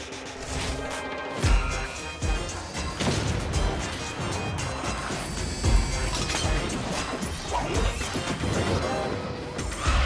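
Cartoon sound effects of clanks, thuds and crashes as a pup slides down a chute into his police truck and the truck rolls out, over upbeat theme music. The heaviest hits come about one and a half seconds in and again around six seconds.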